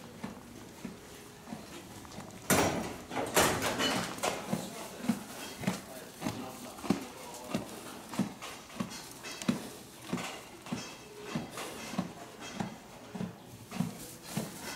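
A horse eating hay from a feed tub, chewing in a steady rhythm of about three crunches every two seconds, with two loud bursts of noise about three seconds in.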